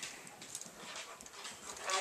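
Faint, stifled laughter: a few muffled snorts and breaths held back, with no words.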